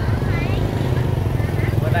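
Small motorbike engine running steadily at low speed, its low rapid firing drone continuous throughout, with market voices over it.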